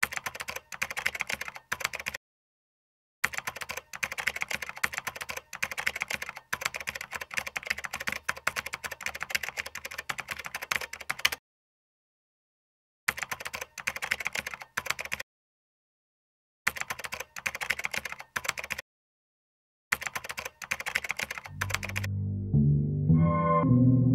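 Computer keyboard typing, rapid clicks in five bursts separated by dead silence, the longest running about eight seconds: a typing sound effect laid under on-screen text.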